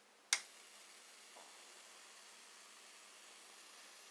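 A sharp single click as the Slayer exciter coil is switched on, then a faint steady hiss of corona discharge from the tip of the wire on the coil's top load.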